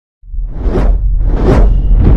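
Intro sound effects: two loud whooshes, about three-quarters of a second apart, each swelling and fading over a deep steady rumble that starts suddenly just after a moment of silence.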